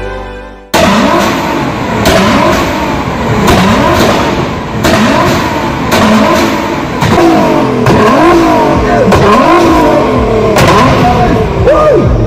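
Widebody Nissan GT-R's twin-turbo V6 free-revved hard while standing still, starting suddenly about a second in and rising and falling in pitch about once a second, with sharp cracks from the exhaust now and then. Loud enough that spectators cover their ears.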